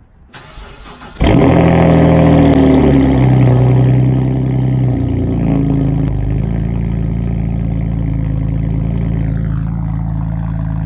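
BMW 325i inline-six cold-started: a brief crank, then it catches about a second in and flares to high revs before dropping to a steady, lower idle around six seconds in. It runs loud with its catalytic converters removed.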